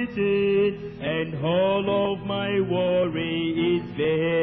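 A hymn sung slowly with long, held notes that slide from one pitch to the next.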